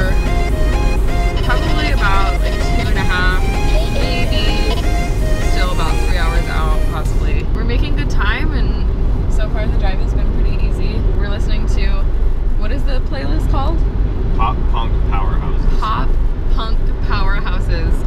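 Steady low rumble of road and wind noise inside a car cabin at highway speed.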